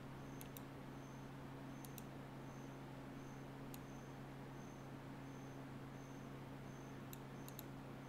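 A few faint computer-mouse clicks, scattered in pairs, over a steady low electrical hum.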